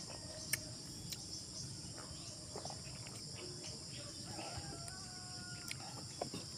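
Steady high-pitched chorus of insects, with a few sharp clicks and smacks of someone eating by hand, the loudest about half a second in.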